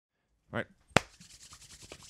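A man says "all right", then a single sharp click, then faint quick rubbing strokes of hands rubbing together close to the microphone.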